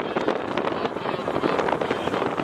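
Wind buffeting the camera's microphone, a dense crackling rush.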